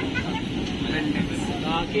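Running noise of a moving passenger train heard from inside the coach: a steady low rumble, with people's voices over it.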